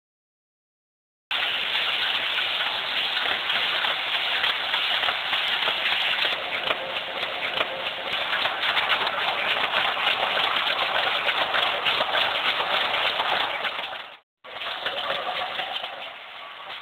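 Printing press running: a dense, steady clatter recorded through a phone's microphone. It starts about a second in and breaks off briefly near the end.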